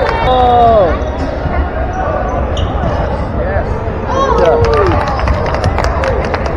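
Basketball being dribbled on a hardwood gym floor, repeated sharp bounces amid the clatter of players running, with spectators' voices shouting across the hall.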